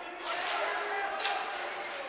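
Ice hockey rink during play: a steady hiss of skate blades on the ice, with faint voices of spectators in the arena.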